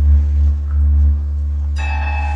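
Free-improvised electric guitar and amplifier sounds: a loud, low droning hum that swells and pulses. Near the end a sudden strike sets off a bell-like ringing cluster of high tones.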